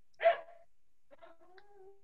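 A dog's single short yelp about a quarter second in, then a faint drawn-out whine near the end.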